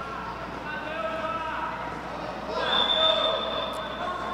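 Players and spectators shouting in a futsal arena, with a short, steady blast of a referee's whistle about two and a half seconds in, stopping play as the ball goes out over the end line.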